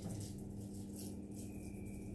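Faint rattling over a steady low hum in a small room.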